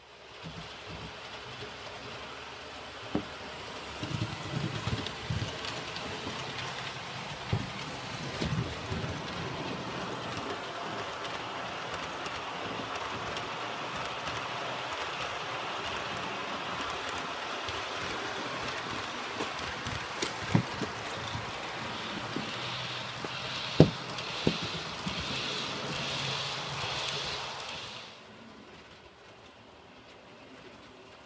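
Bemo model train running along its track: a steady whirr of motor and wheels, with occasional sharp clicks. The sound dies away about two seconds before the end.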